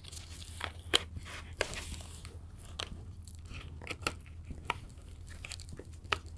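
Hands handling a plastic disc case in clear plastic wrapping: scattered sharp clicks and crinkles of plastic at irregular intervals.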